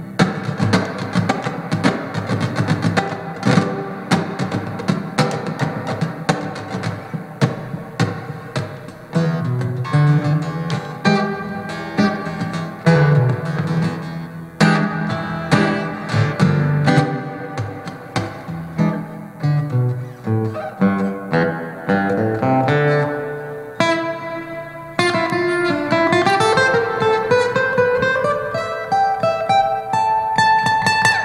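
Solo steel-string acoustic guitar played as an instrumental, picked notes mixed with sharp percussive taps on the guitar body. Near the end a run of notes climbs steadily in pitch.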